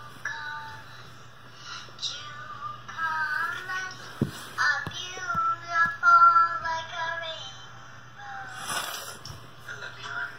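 A high singing voice carrying a melody, loudest around the middle and fading again near the end, over a faint steady low hum.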